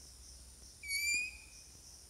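A short, high squeak of chalk on a blackboard as a line is drawn, about half a second long near the middle, rising slightly in pitch.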